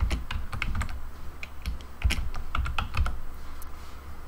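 Typing on a computer keyboard: a quick run of keystrokes in the first second, a short pause, then a second run from about two to three seconds in.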